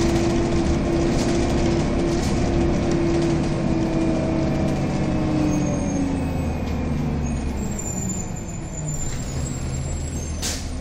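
Transit bus driving, heard from inside the passenger cabin: engine and drivetrain running with a steady whine that slides lower in pitch about halfway through, the overall sound easing slightly near the end.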